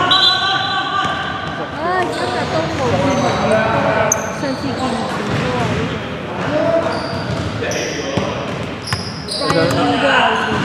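A basketball being dribbled on a hardwood gym floor in a large, echoing sports hall, with short high squeaks of sneakers on the wood.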